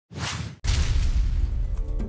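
Produced intro sound effect: a short whoosh, a split-second gap, then a deep impact hit about half a second in, whose low rumble and hiss fade away over the next second.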